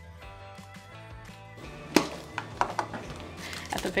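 Light background music, then about two seconds in a single sharp snap as a plastic toy capsule ball is pulled open, followed by smaller clicks and rustling of the plastic parts and packets being handled.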